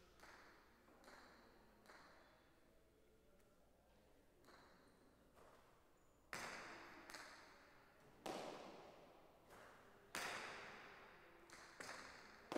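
Jai alai pelota striking the granite walls and floor of the fronton during a rally. A few faint knocks come in the first half, then from about halfway there is a series of loud, sharp cracks, one every second or two, each ringing out in the hall.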